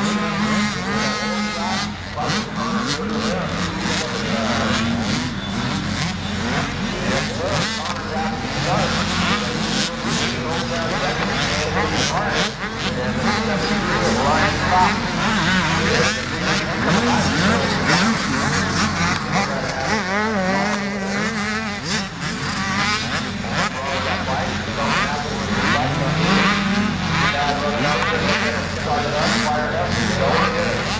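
Several motocross dirt bikes racing on a dirt track, their engines revving up and down over and over as they go over the jumps and pass by, one pass overlapping the next.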